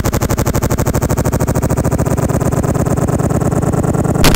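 Rapid, evenly pulsing electronic drone with a steady low pitch; its higher part fades away over the last two seconds, as though a filter is closing.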